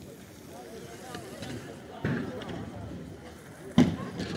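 Background voices of people around the track talking, with no clear words and a louder burst about two seconds in. A single sharp knock near the end is the loudest sound.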